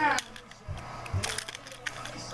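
Small flat game tiles being handled and set down on carpet: a few light clicks and soft knocks, about three over two seconds.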